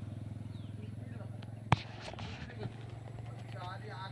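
Motorcycle engine running steadily at a low pitch, with one sharp click a little under halfway through.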